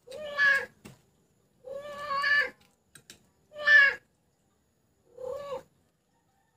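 Domestic cat meowing four times, roughly once every one and a half seconds, each meow a clear pitched cry, as it comes after food set out in a bowl.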